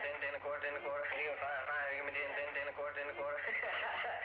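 A man doing an auctioneer's chant, calling bids in a rapid, sing-song run of words without a break. The recording is old and thin, from a tape recorder whose microphone was hidden in a sleeve.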